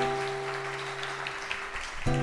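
A guitar chord rings out and slowly fades away.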